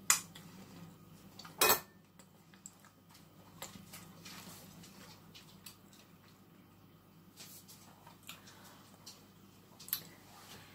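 Kitchenware clinking on a counter: a sharp clink at the very start and a louder short clatter about a second and a half in, then a few faint ticks.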